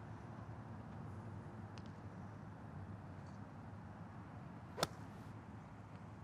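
Golf iron striking a ball: one sharp, crisp click about five seconds in, over faint steady background noise.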